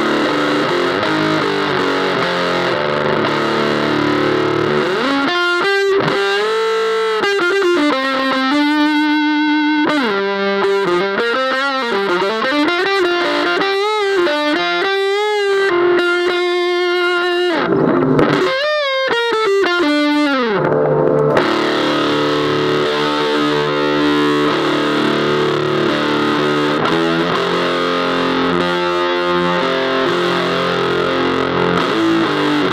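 Electric guitar played through an Electro-Harmonix Bass Big Muff Pi fuzz pedal set with sustain full and tone at zero, a huge, thick fuzz. Heavy chords give way about five seconds in to a sustained single-note lead with string bends and vibrato, and chords return at about twenty-one seconds.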